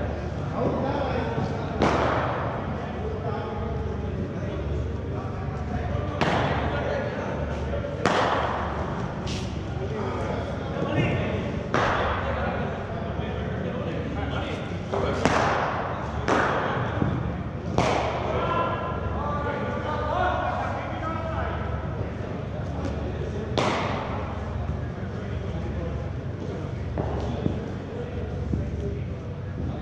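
Cricket balls knocking off bats, the artificial-turf pitch and the netting in indoor practice nets: sharp knocks a few seconds apart, about nine in all, echoing in a large hall.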